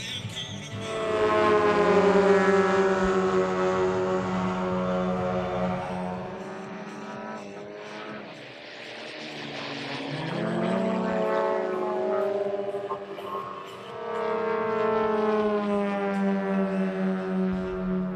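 Three radio-controlled model aircraft flying past in formation, their engines droning and swelling with each pass, the pitch bending as they go by.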